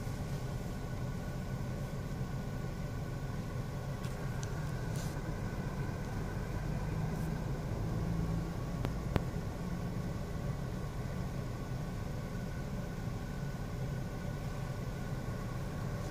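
Steady low hum of a car engine idling, heard from inside the cabin, with a single sharp click about nine seconds in.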